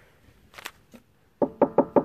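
A hollow barrel rapped about five times in quick succession near the end, each knock ringing with a drum-like tone. A single sharp click comes earlier.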